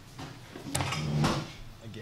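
Two sharp knocks about half a second apart, like a door or drawer shutting, in a room.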